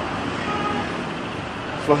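Steady background noise of distant road traffic, with a few faint high notes about half a second in.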